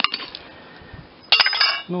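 A short metallic clink with a brief ring about a second and a half in, as a small steel hand scratcher with wire tines is set down on a pile of steel rock hammers and picks. A faint click comes right at the start.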